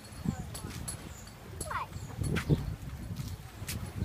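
Footsteps on stone steps and paving, a series of sharp clicks and slaps, with a brief snatch of voice near the middle.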